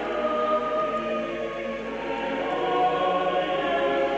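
Choir singing slow liturgical music for a Sarum Rite High Mass, several voices holding long, overlapping notes. It sounds dull, with little treble, as on an old recording played back.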